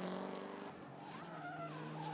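The BMW E30 drift car's supercharged LS V8 held at high revs through a drift, heard at a distance. Its note steps down a little in pitch about a third of the way in.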